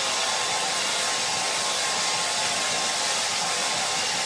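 Handheld hair dryer running with a steady rush of air and a faint steady whine.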